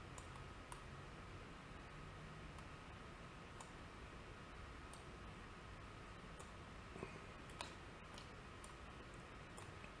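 Faint computer mouse clicks, irregular and more frequent in the second half, over a steady low hiss.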